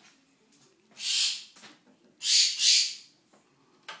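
A pet bird screeching: one harsh call about a second in, then two calls back to back a little past halfway.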